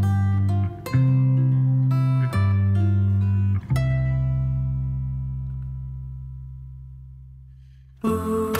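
Closing bars of an acoustic folk-country song: acoustic guitar and bass strike a few chord changes, then a final chord rings out and fades away over the last four seconds.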